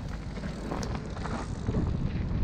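Mountain bike rolling down a dirt singletrack, with tyre noise on the dirt and loose leaves, scattered small clicks and rattles, and low wind rumble on the microphone that builds toward the end as speed picks up.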